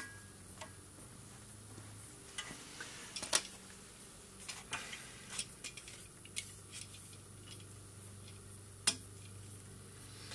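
Light clicks and metallic clinks as a clip-on slide-position guide is fitted onto a trombone's slide, with handling of its parts. The taps are scattered and quiet, with the sharpest clicks about three seconds in and near the end.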